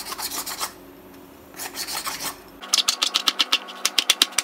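A kitchen knife scraping the ridged skin off a ridge gourd (turai) in short rasping strokes. About two and a half seconds in, this gives way to quick sharp knife strokes cutting the gourd into pieces on a cutting board, several a second.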